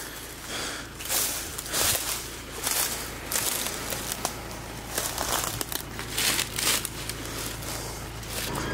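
Footsteps crunching through dry leaf litter and twigs at a steady walking pace.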